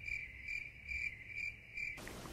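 Cricket chirping sound effect, a clean chirp repeating about twice a second over otherwise silent audio. It is the 'crickets' gag marking the awkward silence after a joke falls flat.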